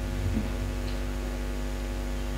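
Steady electrical mains hum: a low buzz with evenly spaced overtones, picked up through the microphone and sound system.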